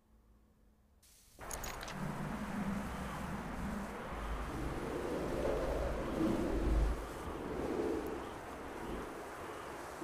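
Video game soundtrack of a blizzard: steady wind noise with a low rumble, coming in suddenly about a second in after near silence on the loading screen.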